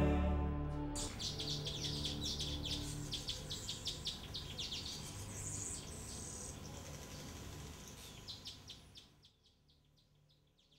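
Small birds chirping and calling in quick, overlapping succession, gradually fading out and stopping about nine seconds in.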